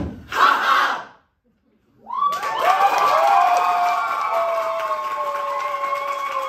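A sharp thump and a short final vocal cry from the ensemble, a second of silence, then the audience breaks into cheering, whooping and applause about two seconds in and keeps it up.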